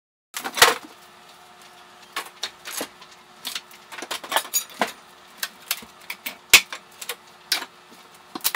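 Irregular sharp knocks and metallic clatters of hand demolition work, tools and pieces being handled and struck, the loudest about half a second in and again past six seconds, over a faint steady hum.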